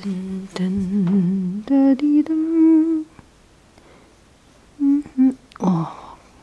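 A person humming a tune: a low, wavering note for about a second and a half, then higher held notes, a pause, and a few short hums near the end.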